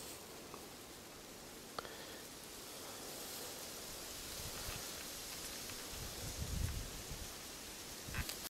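Faint, steady outdoor hiss with light rustling, a small click about two seconds in and a low rumble near the end.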